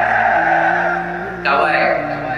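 A man's voice chanting in a drawn-out, sung style, holding one long steady note, with a new phrase starting about a second and a half in.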